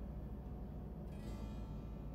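Faint background music of plucked strings over a steady low room hum.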